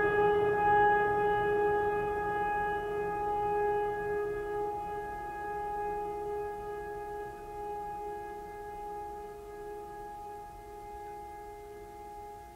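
Background music: one long ringing tone, struck just before, holding steady and slowly fading away.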